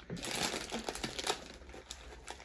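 Plastic Flamin' Hot Cheetos chip bag crinkling as a hand rummages inside it for chips, a dense crackle loudest in the first second and thinning out after.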